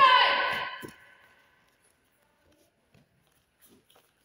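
A loud martial-arts shout (kiai) from a boy, about a second long and falling in pitch, right at the start. It is followed by a few faint taps on the mats.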